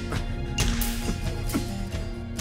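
Tense background music with held tones, cut by several sharp swishing strikes.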